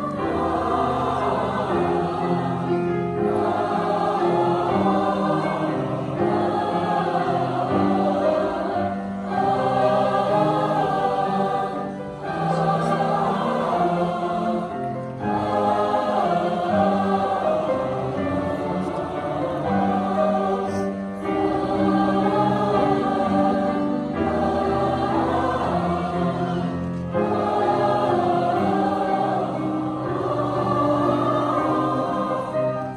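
Large mixed-voice choir singing with grand piano accompaniment, in phrases of about three seconds with brief breaths between them.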